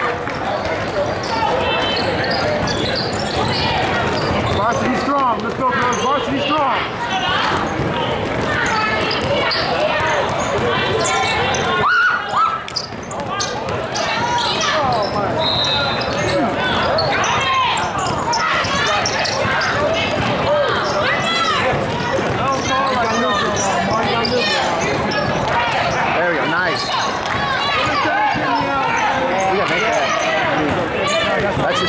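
Basketball game in a large hall: many overlapping, indistinct voices of players and spectators, with a basketball bouncing on the court. There is a brief break about twelve seconds in.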